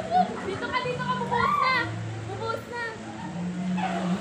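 Playful voices calling out, with background music holding steady low notes.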